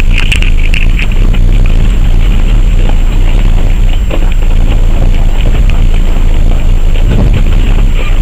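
Vehicle driving slowly along a rough gravel road, heard from inside with the window open: a loud, steady low rumble from the running gear and the air at the window, with scattered small clicks and rattles.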